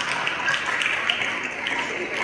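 Audience applauding: many hands clapping together in a steady, even patter.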